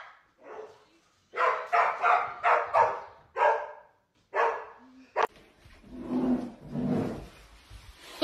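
A dog barking: a run of short barks over the first four and a half seconds, then a sharp click and quieter, lower sounds.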